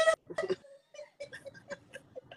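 Quiet chuckling: a run of short, soft bursts of laughter from a man on a phone live stream.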